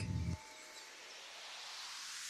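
Faint hiss that slowly swells in level after the voice stops.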